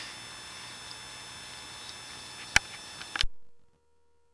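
Steady electrical hiss with several faint constant whines from a sewer inspection camera's recording system, no voice. A sharp click about two and a half seconds in and a few quick clicks just after three seconds, then the sound cuts off abruptly to near silence with only a faint steady tone.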